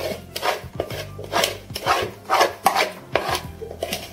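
A metal spoon scraping thick dough out of a mixing bowl and into a baking dish, in short repeated strokes about two a second.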